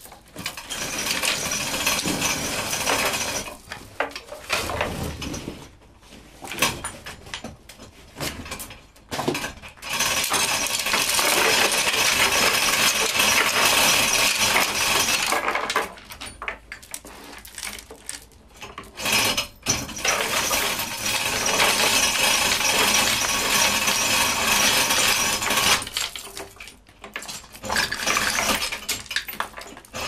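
Hoist chain clinking and rattling in long runs with short pauses, as the chain hoist lifts an engine.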